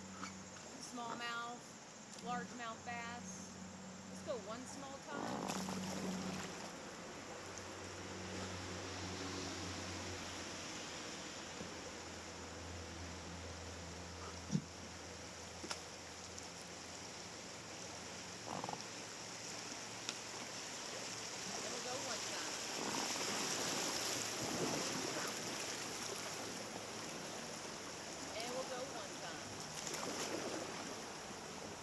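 Flowing river water running past an inflatable raft, a steady rush that swells louder in the second half as the raft reaches a riffle of white water. Faint voices in the first few seconds and a single sharp knock about halfway through.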